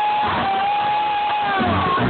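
Live rap concert music with the crowd cheering, loud and steady. Recorded on a phone, so it sounds dull, with the highs cut off.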